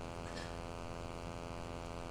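Steady electrical mains hum with a ladder of evenly spaced overtones, picked up in the lecture-hall audio chain, with a faint brief noise about a third of a second in.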